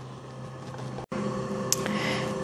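Quiet kitchen room tone with no distinct event, broken by an abrupt edit about a second in. After it comes a somewhat louder steady background hum with a faint hiss.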